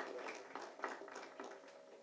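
Quiet room tone picked up by an open microphone, with a few faint soft taps, fading to a faint steady hum near the end.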